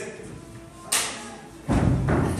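Gunshot sound effects in a played soundtrack: a sharp crack about a second in, then a heavier booming bang near the end.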